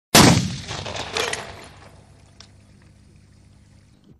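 A sudden loud smash right at the start, with fragments and dust scattering and trickling down, a second smaller crash about a second in, then fading away over about two seconds.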